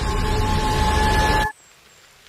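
Loud roar of a large fire with steady high ringing tones over it, cutting off abruptly about one and a half seconds in to a low hush.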